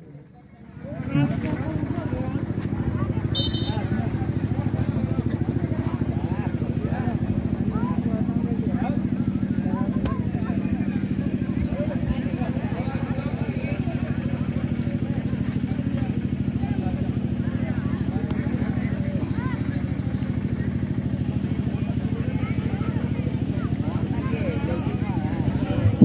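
A small engine running steadily at an even idle, with a fine rapid pulse, over distant crowd chatter. It starts about a second in.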